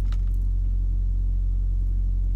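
Steady low rumble of an idling engine, heard from inside a truck cab.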